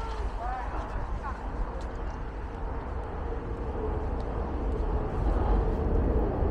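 City street traffic: a steady low rumble, with a steady whine that grows louder over the last few seconds as a vehicle draws nearer.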